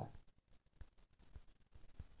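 Near silence with a few faint, short ticks of writing on a touchscreen.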